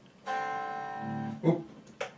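Electric guitar chord struck once and left ringing, a quartal voicing of the open A, D and G strings with C at the first fret of the B string; it sounds thin and quiet because the amp's volume is down, leaving mostly the strings' own unamplified sound. It stops about a second and a half in, followed by a short "Oop".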